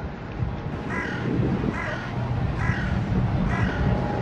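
A bird calling four times, the calls about a second apart, over a steady low background rumble.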